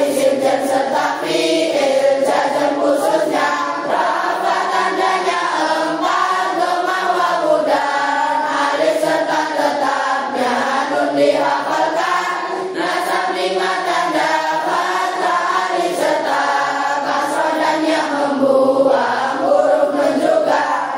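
A class of young boys and girls singing a nahwu nadzom (Arabic grammar verse) together as a group, a steady chant-like melody carried by many voices with brief breaks between lines.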